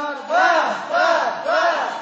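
A group of voices shouting a call in unison three times in quick succession, each shout rising and then falling in pitch.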